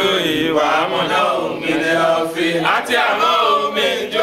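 A group of men chanting together in unison, a devotional Islamic chant, with the voices running on unbroken.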